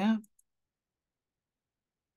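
The end of a spoken word, then a single faint mouse click near half a second in, followed by dead digital silence.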